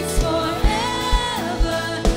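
Live worship band: a woman singing held notes over bass guitar and drums, with the kick drum on a steady beat about twice a second.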